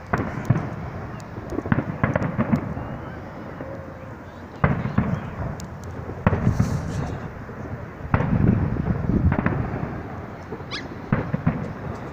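Aerial firework shells bursting, a series of sharp bangs spaced a second or more apart, each followed by a low rolling rumble.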